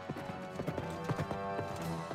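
Horse hooves clip-clopping on stone steps, an uneven run of knocks, over background music with held notes.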